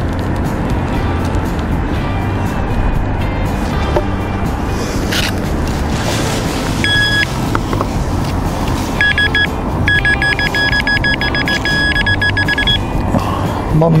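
Background music with a metal detector's electronic beeps over it: a short tone about seven seconds in, then a rapid run of beeps for about four seconds. The beeps are the detector signalling a coin in the dug sand.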